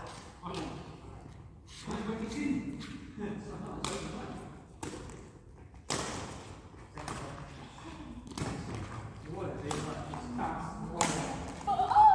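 Badminton rackets striking a shuttlecock during a rally: sharp, irregular hits about one to two seconds apart, with thudding footfalls on the court floor. Players' voices are heard faintly between the hits.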